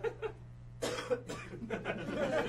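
A cough, sudden and short, about a second in, with scattered light laughter from a small audience around it.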